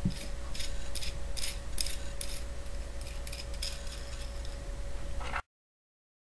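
Light metallic clicking, two or three irregular clicks a second, from a steel nut and washers being spun by hand onto a bolt, over a steady low hum. The sound cuts off abruptly near the end.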